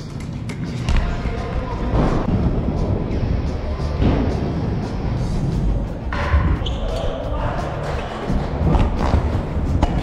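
Trick scooter rolling over a ramp, its wheels giving a steady low rumble, with several thumps as the scooter hits and lands on the ramp surface.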